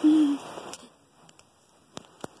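A short, low hoot-like vocal call right at the start, falling slightly in pitch. Then near quiet with a few faint clicks.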